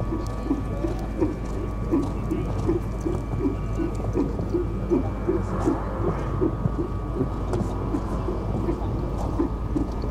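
Show-jumping horse cantering and blowing out in time with its strides: a steady run of short, low puffs about two and a half times a second, over a steady low hum.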